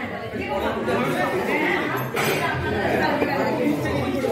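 Background chatter of restaurant diners: many voices talking at once, indistinct, in a large dining room.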